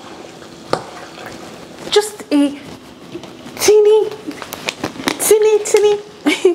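A young child's high-pitched voice making short wordless calls about two seconds in and through the second half, the loudest sound. Underneath is a wooden spoon stirring food in a pot, with a few sharp knocks.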